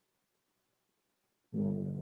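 Near silence, then about one and a half seconds in a man's low, steady, drawn-out hum, like a thinking 'mmm'.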